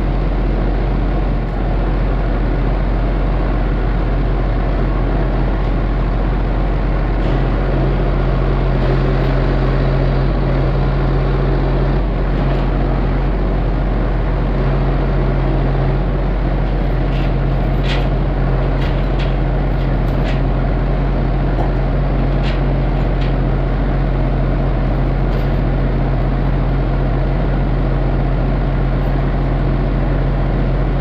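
John Deere loader tractor's diesel engine running steadily while the front loader raises its bucket; the engine note firms up about seven seconds in, and a few sharp clicks come through midway.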